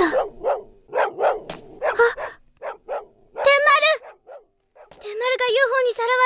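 High, wavering vocal sounds: a string of short breathy sounds, then a brief wavering call, then a longer one held for over a second near the end.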